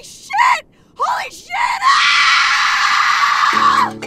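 A woman gives a few short rising cries, then one long, loud held scream that cuts off near the end. Music with struck notes comes in just before the scream stops.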